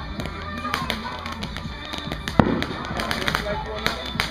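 Ground fountain firework spraying sparks, with irregular sharp crackling pops throughout and one louder pop a little past halfway.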